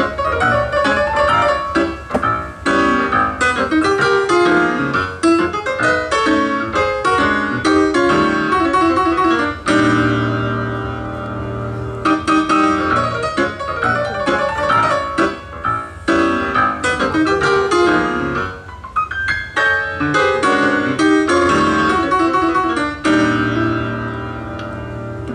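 Yamaha grand piano played live in a jazz style: busy runs of notes and chords, with a held chord about ten seconds in and another near the end.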